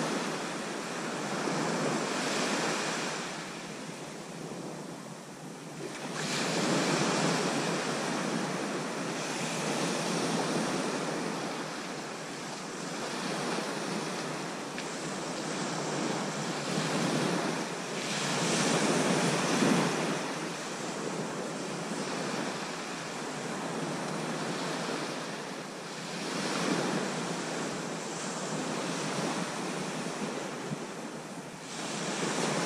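Small North Sea waves breaking and washing up a sandy beach, the wash swelling and ebbing every few seconds.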